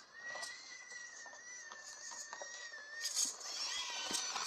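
Micro RC rock crawler's small brushless motor and geartrain whining as it crawls under throttle: a thin, high, steady whine that wavers slightly, then changes pitch near the end as the throttle changes. Small clicks of the tyres and chassis on the course come through.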